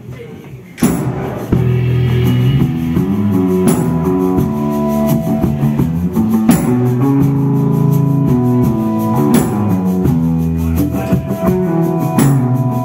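A live folk-rock band starting a song, with electric guitar, tambourine and drums coming in together about a second in. A strong accent recurs about every three seconds.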